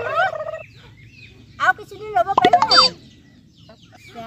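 Domestic chickens calling, with a loud cluster of quick, bending squawks about one and a half to three seconds in.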